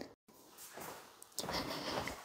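Quiet kitchen room tone with faint low noise, opening with a short click and a brief dead gap.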